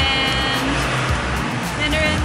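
Background music over busy street traffic noise, with cars passing.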